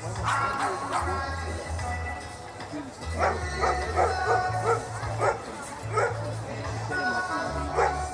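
A dog barking: a quick run of barks starting about three seconds in, then a couple of single barks. Background music with a steady bass line plays underneath.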